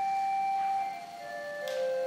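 A small vocal group sings a held chord in straight tone. The chord moves to new notes about a second in, and a sung consonant hisses briefly near the end.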